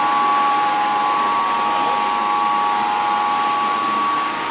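Steady machinery noise of pump motors running in a plant room: an even rushing noise with a steady whine on top.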